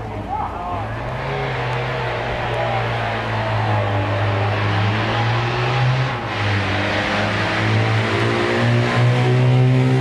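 Holden Monaro engine running steadily at raised revs, with a brief dip about six seconds in and a slight climb near the end.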